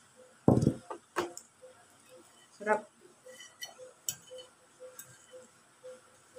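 A few light clinks of a utensil against a ceramic plate, with a low handling thump about half a second in and a short voiced hum near the middle. Faint ticks run underneath at about three a second.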